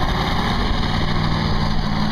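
GMC 6.5-litre turbo diesel engine revved hard and held at high revs, loud and steady, the driver dumping fuel to roll black smoke.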